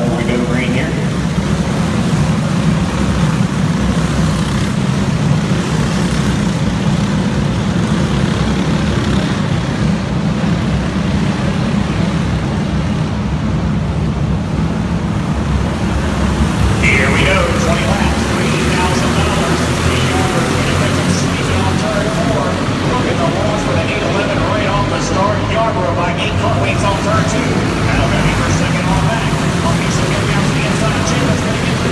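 A pack of racing karts circulating together at pace speed, their small engines blending into one steady drone. Voices are heard over it in the second half.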